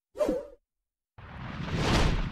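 Whoosh sound effects for an animated title: a short whoosh about a quarter second in, then a longer whoosh that swells to a peak at the end.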